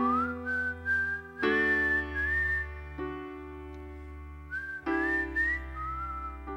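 A man whistling a slow melody into a microphone over sustained grand piano chords. The whistle slides up to open the phrase, breaks off near the middle while a chord rings on, then comes back for a second phrase near the end.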